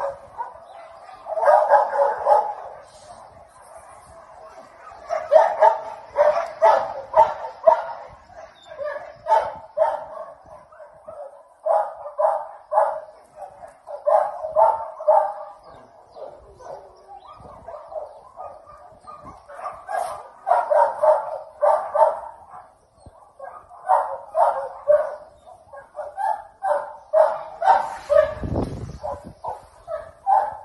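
Dogs barking in quick runs of short barks with brief pauses between the runs. A short low rumble comes near the end.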